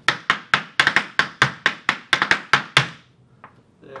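Irish dance hard shoes striking a wooden dance board: about eighteen sharp taps in under three seconds, slow and fast trebles in a galloping rhythm.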